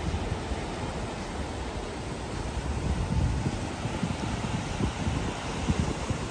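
Wind buffeting the microphone, with a low, uneven rumble, over the wash of small waves breaking on a sandy beach.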